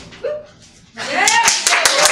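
Small room audience clapping and whooping, starting about a second in after a brief lull with one short vocal sound; the claps come thick and fast, with voices cheering over them.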